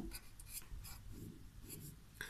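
A blue marker writing on paper: a faint run of short strokes as the heading "1) a)" is written.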